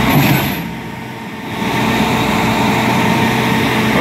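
Grapple truck's engine running steadily while its hydraulic crane works, a constant drone that dips briefly about a second in.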